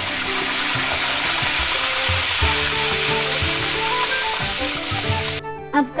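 Curry leaves sizzling in hot oil with mustard seeds, cumin and asafoetida in a kadai, the tadka tempering for the masala. The loud sizzle is steady, then cuts off suddenly near the end.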